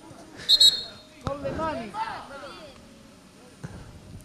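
A short, shrill referee's whistle blast about half a second in, then a sharp knock of the ball, and raised voices calling out from the pitch.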